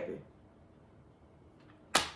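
Quiet room tone, then a single sharp hand clap near the end.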